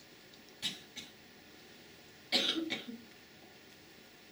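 A person coughs once, a short choppy burst about two seconds in. Before it come a softer breathy puff and a light click in the first second.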